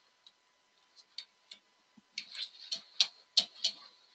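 Computer mouse clicking repeatedly: a few faint clicks, then a quicker run of about eight louder clicks in the second half, as a presentation slide fails to advance.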